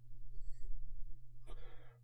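A man's short intake of breath close to the microphone near the end, over a steady low rumble.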